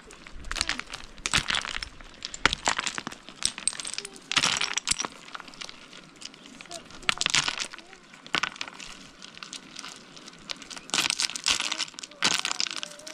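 Loose stones clicking and clattering against each other as several people pick through stony ground by hand, in irregular bursts of small knocks and scrapes.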